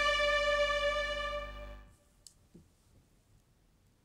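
Sampled orchestral first-violin part from a string library holding one long note. The note fades out and stops about two seconds in, shaped live by the expression and modulation fader being ridden. Near silence follows, with a couple of faint clicks.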